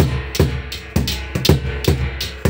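A large hide-headed drum beaten with a stick together with hand-held metal plates struck in time, a steady beat of about two strokes a second, each stroke ringing metallically.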